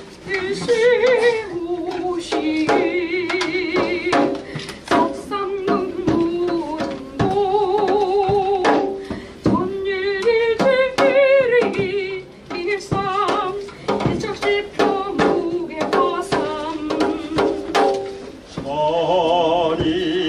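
A singer performing a song with strong vibrato on long held notes, over instrumental accompaniment with frequent drum hits.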